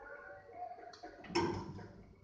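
A single sharp knock a little past the middle, with a brief ring after it, over faint background talking.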